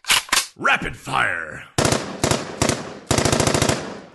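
Machine-gun sound effect used as a segment stinger: a few sharp single shots, then spaced bursts, ending in a very fast, even burst of under a second. A short voice-like swoop comes about a second in.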